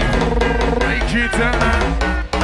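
Donk (bouncy hard dance) music played loud in a DJ mix: a fast drum beat over a heavy, continuous bass, with pitched synth lines sliding up and down.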